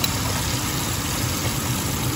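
Flour-dredged chicken deep-frying in oil held at about 350°F: a steady, even sizzle of bubbling oil with a low hum underneath.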